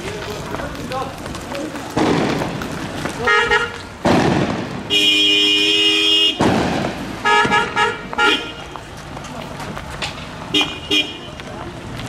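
Vehicle horn honking: a few short blasts, then one long steady blast of about a second and a half, then more short honks in quick succession.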